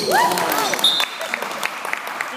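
Indoor basketball game in a large sports hall: a voice shouts with a rise and fall in pitch as a shot goes up at the rim, a brief high squeak follows, then a run of sharp knocks comes about three a second.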